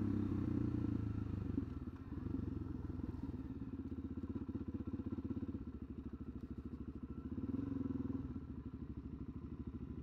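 Suzuki DR-Z400SM's single-cylinder four-stroke engine as the bike slows: louder for the first couple of seconds, then running at low revs with a steady beat, with a brief rise in revs a little before eight seconds in.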